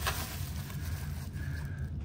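Plastic bubble-wrap packaging rustling and crinkling as it is handled, with a click at the start, over a steady low hum.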